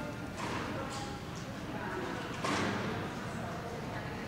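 Indistinct background voices murmuring and echoing in a large indoor hall. There are two brief rushes of noise, about half a second and two and a half seconds in.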